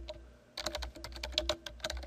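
Computer keyboard being typed on, a quick run of key clicks after a brief pause near the start.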